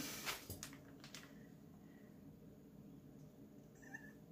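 Near silence: quiet room tone, with a few faint short noises in the first second.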